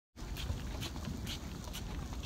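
Footsteps on asphalt at walking pace, about two steps a second, over a steady low rumble.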